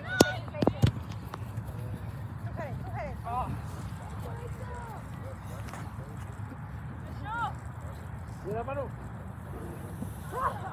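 Distant shouts and calls from a youth soccer field over steady wind noise on the microphone. A few sharp knocks about a second in are the loudest sounds.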